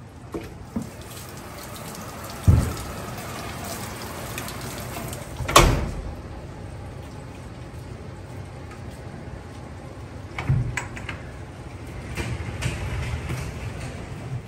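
Steady rain falling, with a few sharp knocks and thumps, the loudest about halfway through, from things being loaded into the cargo box of a rental box truck.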